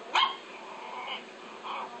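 A chihuahua's short, sharp yip just after the start, then a few faint high cries.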